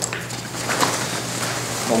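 Nylon backpack being handled and shifted on a table: fabric rustling and straps moving, over a low steady hum.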